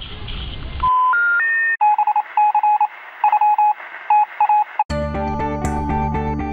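About a second in, outdoor background noise cuts off abruptly into electronic phone-style beeps: a quick run of four tones climbing in pitch, then groups of short repeated beeps at one pitch, like a phone dialing sound effect. Music with plucked notes starts near the end.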